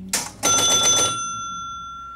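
1965 Gottlieb Bank-A-Ball electromechanical pinball machine's bell rattling for under a second, then ringing on and slowly dying away. A short clack comes just before.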